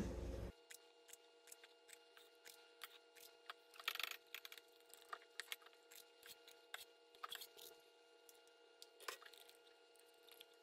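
Faint, sparse clicks and soft squishes of an ice cream scoop dropping whipped batter into a silicone bun pan, over near-silent room tone, with two slightly louder soft sounds about four and nine seconds in.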